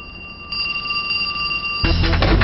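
Electric doorbell ringing with a steady high electronic tone while its wall button is held down. Guitar music cuts in near the end.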